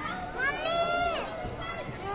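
A child's high voice calling out once, a long shout that rises and then falls, among other children's voices at play.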